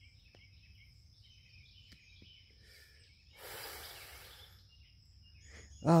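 A man's long breath out, lasting about a second and a half and starting about three seconds in, exhaling a drag from a cigarette. Faint bird chirps and a steady high insect drone run underneath.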